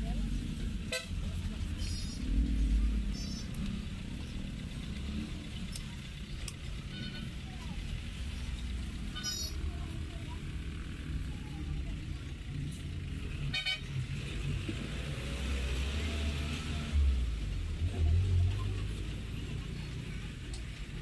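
Street traffic background: a steady low rumble of passing vehicles, broken about half a dozen times by brief, high-pitched horn toots, with people talking.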